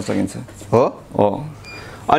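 A man speaking Nepali in short phrases, with pauses between them.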